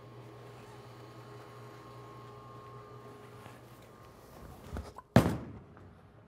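A bowling alley's steady low hum, then a few light knocks and one heavy thunk about five seconds in: an Ebonite GB4 Hybrid bowling ball landing on the wooden-style lane surface at release. The thunk dies away over about half a second.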